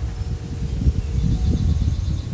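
Wind buffeting the microphone outdoors, an uneven low rumble, with a faint steady high tone above it.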